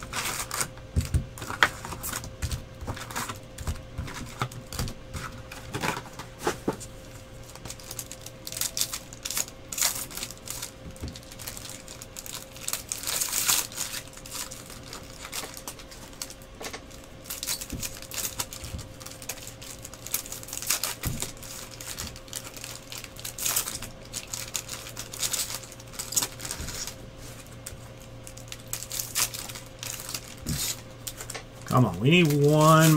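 Trading cards being handled and flipped through, with irregular small clicks, slaps and crinkles of cards and pack wrappers, over a faint steady hum.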